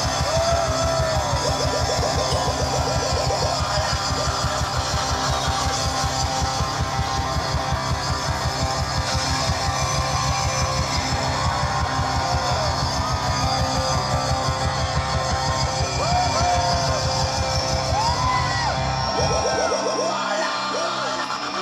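Live band playing loud music: electric guitar and keyboards over a fast, steady bass beat. The bass drops out shortly before the end.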